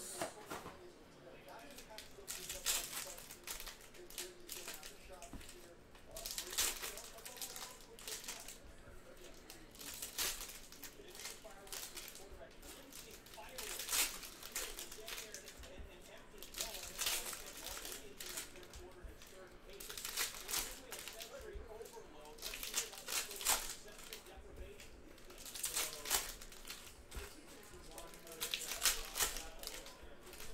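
Foil trading-card packs being torn open and their wrappers crinkled by hand, in short bursts every few seconds, with cards handled and stacked in between.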